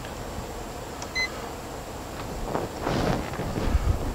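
A single short electronic beep about a second in, from the Soundoff Signal Blueprint emergency-light control panel acknowledging a button press as the left alley light is switched on, over steady background noise.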